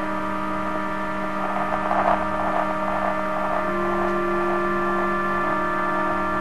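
Experimental drone music: a stack of sustained, humming tones holding steady. A grainy haze of noise swells briefly about two seconds in, and one of the middle tones steps slightly higher a little past halfway.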